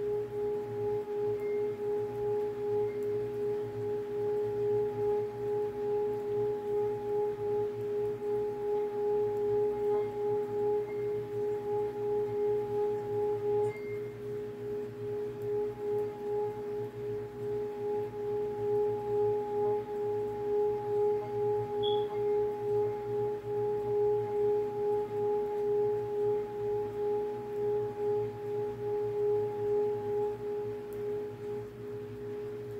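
Singing bowl sounding one steady, held tone with an overtone above it, its loudness wavering in a regular pulse. It dips slightly about halfway through.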